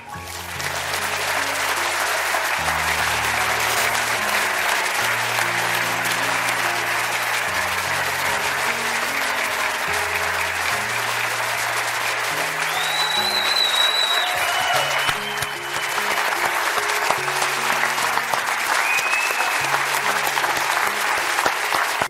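A large audience applauding steadily, with a couple of short high whistles, over background music of slow sustained low notes.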